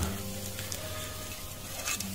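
Pork shashlik on a metal skewer sizzling faintly over glowing wood coals as the skewer is turned by hand, with a couple of faint crackles.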